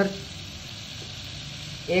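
Chicken pieces and whole spices sizzling steadily in ghee in a pan over a low flame.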